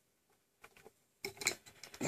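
Near silence, then a short run of faint clicks and taps starting a little over a second in.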